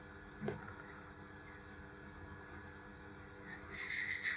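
Faint handling of a small screw-on camera lens filter: one light click about half a second in, then a brief scratchy rubbing near the end as the filter ring is turned in the fingers, over a steady low hum.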